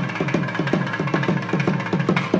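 Thavil drum played in a fast, even stream of strokes, about seven a second, each stroke's low note sliding down in pitch.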